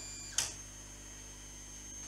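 Anycubic FDM 3D printer running at the start of a print: a faint, steady high whine from its motors, its pitch shifting once, with a brief sharp noise about half a second in.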